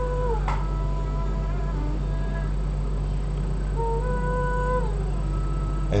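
A female singer's studio vocal take: a few long, quiet held notes, one near the end sliding up, holding and falling away, over a steady low backing track.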